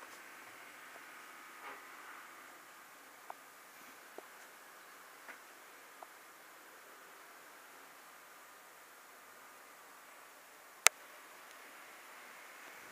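Quiet room hiss with a few faint light ticks in the first half, and one sharp, loud click near the end.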